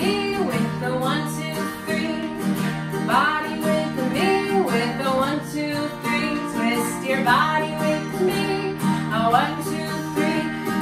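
A woman sings a warm-up movement song to her own strummed acoustic guitar. The strumming is steady and the voice comes in phrases.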